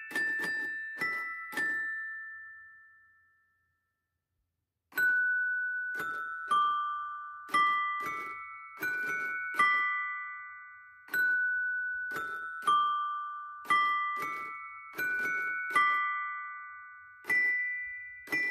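Mr. Christmas Santa's Musical Toy Chest (1994): toy figures' mallets strike its chime bars, each note a click followed by a ringing tone that fades. One tune ends in the first two seconds and rings out to silence. About five seconds in, the next tune starts, a melody of single chime notes at roughly one or two a second.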